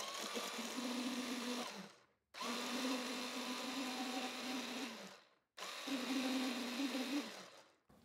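Electric mini food chopper mincing hot pepper and garlic very finely. It runs in three bursts of about two to three seconds each. Each burst is a steady motor hum with the blades whirring, winding down as it stops.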